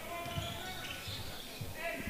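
Faint gymnasium ambience of a basketball game: distant crowd voices and court noise, with a few thin held tones.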